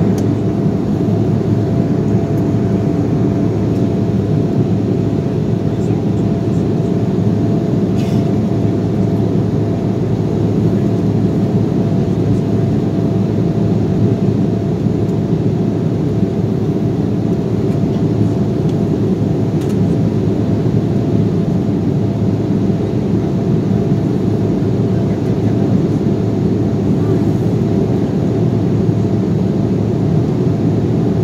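Steady cabin noise of an Embraer E-175 jet in the climb, heard from a window seat: the deep, even rush of its GE CF34 turbofan engines and the airflow, with a thin steady whine running through it.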